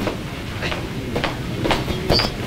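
Rumble and knocks of handling noise on a handheld microphone as it is carried, with a few faint knocks about half a second apart.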